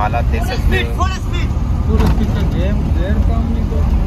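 Steady low rumble of a slow-moving car's engine and tyres, heard from inside the vehicle, with people's voices over it.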